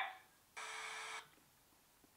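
A short, steady electronic buzz lasting about two-thirds of a second, starting about half a second in.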